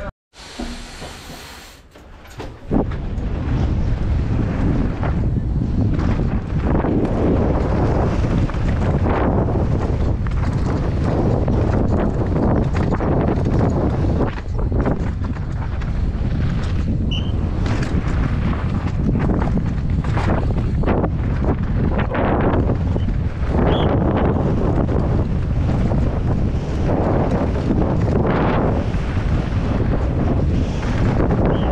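Downhill mountain bike descending a dirt and gravel track at speed, heard from a helmet camera: a steady rush of wind on the microphone, with tyres and bike parts rattling over rocks and bumps. It is quieter for the first couple of seconds, then loud once under way.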